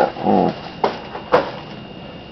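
Two short slurping sips from a paper cup of herbal tea, about half a second apart.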